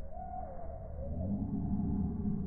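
Black Sumatra rooster crowing: one wavering call about a second long, with low music coming in under it near the end.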